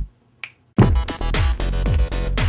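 A single finger snap in a brief hush, then an electronic rap beat kicks in loudly: deep kick drums that drop in pitch under quick hi-hats.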